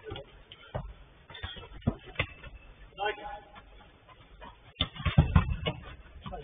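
Players' shouts and calls on a five-a-side football pitch, mixed with several sharp knocks of the ball being kicked, loudest near the end. The sound is thin and narrow, as picked up by a security camera's microphone.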